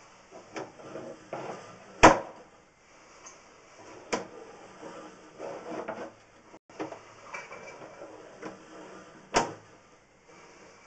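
Sewer inspection camera's push cable being pulled back out of the line and fed onto its reel: irregular scraping and rubbing, with sharp knocks about two seconds in, around four seconds in and near the end, the first knock the loudest.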